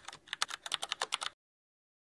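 Rapid computer-keyboard typing clicks, a sound effect laid under on-screen title text, at roughly seven keystrokes a second, cutting off abruptly a little over a second in.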